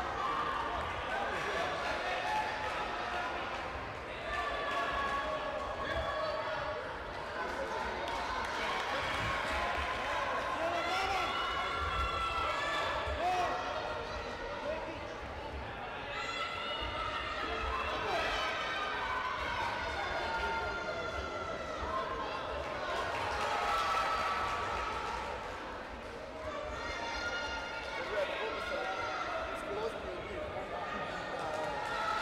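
Sports-hall din of several voices shouting and calling over one another, echoing in a large hall, with dull thumps now and then.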